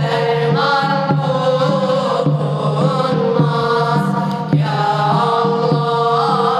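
A group of boys chanting a religious melody together in unison, the line wavering in ornaments over a steady held drone note.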